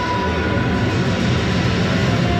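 Fireworks going off in a continuous low rumble with crackling, over show music.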